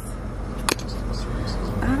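Steady low hum inside a car's cabin, with one sharp click under a second in.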